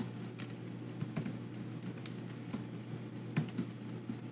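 Typing on a computer keyboard: irregular key clicks, with a couple of louder strokes about three and a half seconds in, over a steady low hum.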